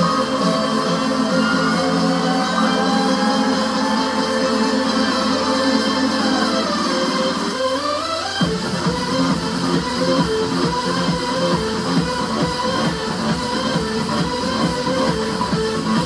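Electronic dance music for a spin workout: sustained synth tones with a rising sweep that builds into a steady, driving kick-drum beat about eight seconds in.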